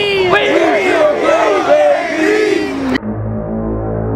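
A group of high-school football players yelling and whooping together, many voices overlapping, which cuts off abruptly about three seconds in. Low, droning music with steady bass notes then begins.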